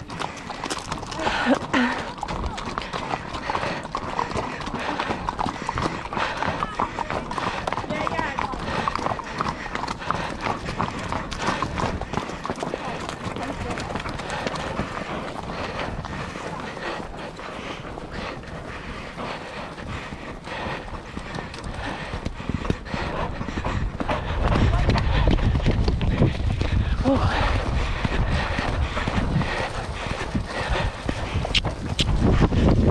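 Horse's hooves clip-clopping steadily as it is ridden, with people talking in the background. A loud low rumble joins near the end.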